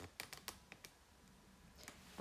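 Faint, light clicks in quick succession: about six in the first second, then two more near the end.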